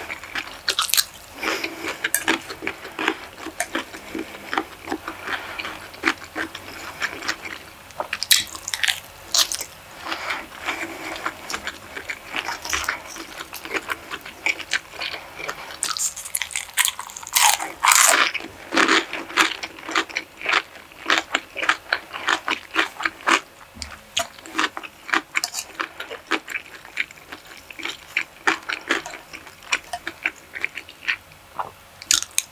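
Close-miked eating of fried rice and stir-fried chicken and vegetables: a steady run of small, wet mouth clicks from chewing. A louder, denser burst of chewing comes about halfway through, after a piece is bitten from the hand.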